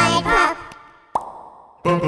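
The children's choir and band stop short, and in the gap a single cheek pop (a finger flicked out of the mouth) sounds about a second in, with a short upward 'pop' in pitch. This is the song's trademark 'pop'. The singing and band come back in near the end.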